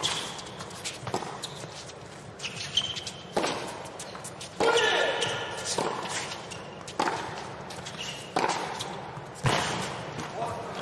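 Tennis rally: a sharp racket-on-ball hit every second or so as the ball is struck back and forth, some hits with a short vocal grunt from the player.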